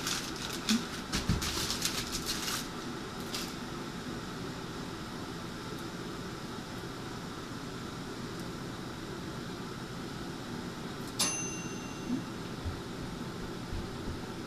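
Plastic wrapping crinkling as it is handled for the first two or three seconds, then a steady low hiss, with one sharp metallic clink that rings briefly about eleven seconds in.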